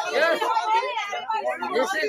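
Several voices talking over one another in crosstalk.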